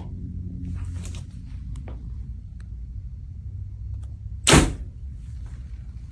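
A Hoyt compound bow shot once about four and a half seconds in: a single sharp crack as the arrow is released and punches through a paper tuning sheet. A low steady hum runs underneath.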